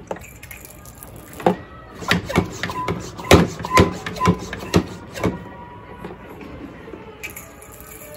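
One-gallon hand-pump garden sprayer being pressurised: about eight pump strokes, roughly two a second. Near the end, water starts spraying from its hose with a steady hiss.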